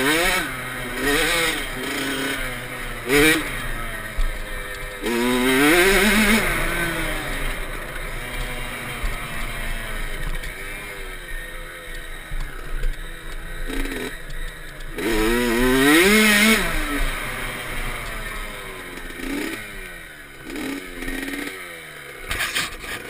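Kawasaki KX65 two-stroke single-cylinder dirt bike engine, revved up and down over and over as it is ridden, its pitch rising and falling with the throttle. It drops to a lower, quieter run near the end as the bike comes to a stop.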